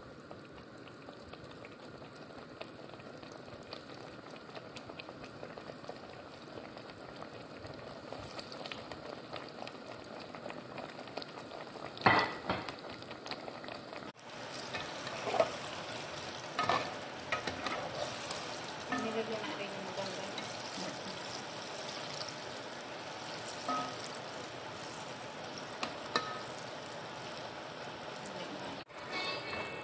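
Vegetable slices deep-frying in hot oil in a pot, a steady sizzle. From about halfway through, a metal slotted spoon stirs and turns the slices, making a handful of sharp clinks and scrapes against the pot.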